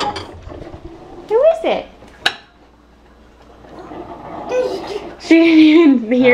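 Dishes clinking and clanging together as they are handled at an open dishwasher, with a sharp clink at the start and another a little over two seconds in. Loud voices come in near the end.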